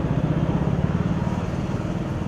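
A motor vehicle engine running close by, a low pulsing rumble that swells and then eases off.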